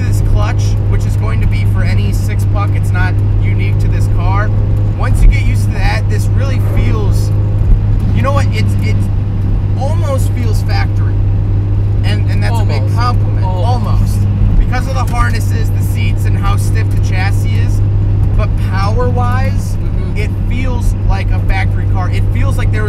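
Turbocharged 1.8-litre BP inline-four of a 1995 Mazda Miata running at steady revs while cruising, heard inside the cabin as a low, even hum under a man talking.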